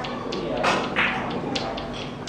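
A few sharp, irregular clicks of billiard balls knocking together on carom tables, the loudest about a second in, over steady room noise.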